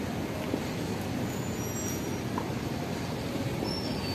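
Steady low rumble of outdoor background noise, even throughout with no distinct events.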